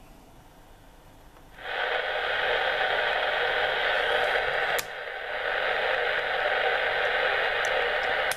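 Yaesu FT-857D transceiver's speaker giving a steady hiss of receiver noise on the AM aircraft band, coming in about one and a half seconds in; a click near the middle briefly interrupts it. The hiss is the radio's ordinary background noise: the nearby switch-mode power supply doesn't seem to bother the aircraft band.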